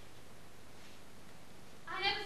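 A pause in the dialogue: the steady faint hiss of the hall on the recording. Just before the end a woman's voice begins with a drawn-out, gliding sound.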